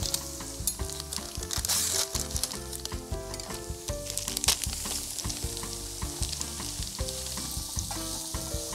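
Sliced onions sizzling with fine crackles as they fry in oil in a pot, with soft background music underneath.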